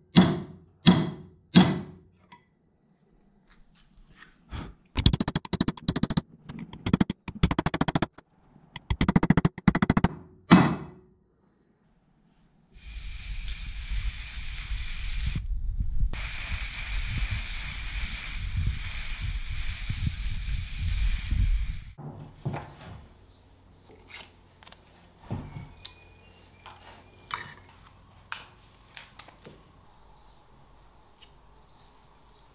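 Hammer blows on a steel bar driving a bush into the eye of a mini excavator's hydraulic ram: a few single blows, then bursts of rapid blows. Then paint spraying with a steady hiss for about nine seconds, broken once briefly, followed by light scattered clicks and taps.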